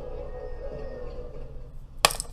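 A steady, slightly wavering drone with no speech.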